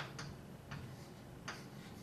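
Chalk writing on a chalkboard: a few short, sharp taps and scratches of the chalk stick against the board, the loudest about a second and a half in.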